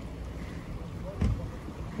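Wind rumbling on the microphone over small sea waves washing against shoreline boulders, with one brief low thump just past a second in.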